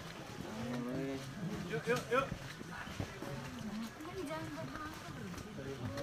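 Indistinct chatter of several hikers' voices in a queue, no clear words.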